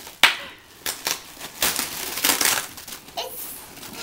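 Plastic packing crinkling and rustling as it is pulled out of a cardboard box, with a sharp snap just after the start, another about a second in, and a dense run of crinkling in the middle.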